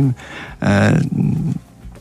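A man's voice holding a drawn-out hesitation sound, a filler "eee", for about half a second in the middle of a pause in radio speech.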